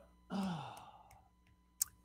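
A man's short, quiet voiced sigh that falls in pitch, starting about a third of a second in, followed by a faint click near the end.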